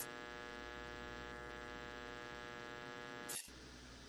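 Low, steady electrical hum with a buzzy row of overtones on a security-camera recording, broken off by a short burst of static about three and a half seconds in, after which only a faint hiss remains.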